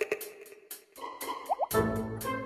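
Edited TV sound effects over background music: the music breaks off, two quick rising water-drop 'bloop' effects sound about a second and a half in, and the music comes back in with its beat just before the end.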